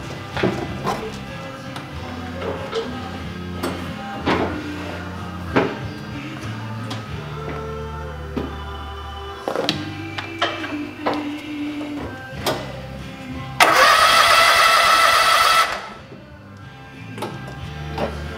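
Background music with changing low notes, under scattered light knocks and clicks. About three-quarters through comes a loud burst of noise with a steady buzzing tone, lasting about two seconds and then cutting off.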